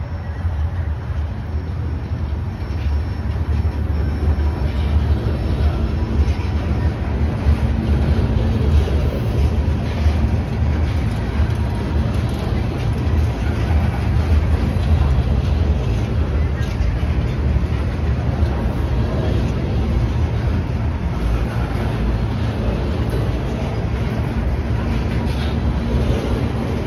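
Freight train of open-top steel gondola cars rolling past close by: a steady, heavy rumble of steel wheels on rail with a few sharp clicks along the way.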